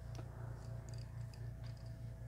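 Hair being lifted and sectioned by hand, with a faint rustle and a few small ticks of the plastic hair clip, over a low, steady hum that pulses about four times a second.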